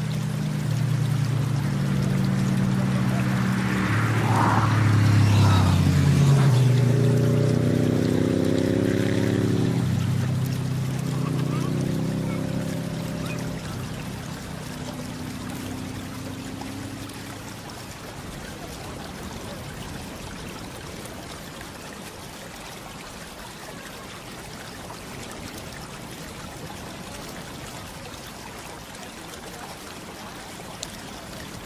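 Soft held music notes, changing every second or two, fade out over the first half, leaving a steady trickle of running water.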